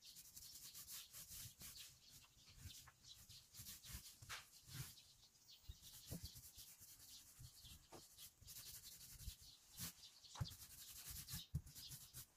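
Paint roller on an extension pole rolling over textured wall siding: faint, irregular rubbing strokes.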